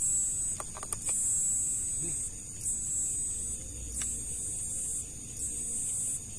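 Night insects buzzing in high-pitched trills about a second long, broken by short gaps, with a few faint clicks.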